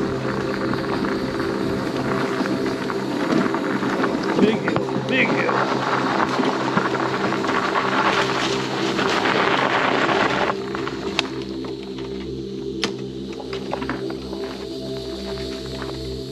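Mobility scooter driving along a forest trail: a steady motor hum under the rough crunch of its tyres on the gravel path, with the crunching dropping away about ten seconds in.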